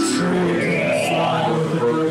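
Live rock band playing: electric guitar and drums with held, sustained notes, and two short high splashes at the start and about a second in.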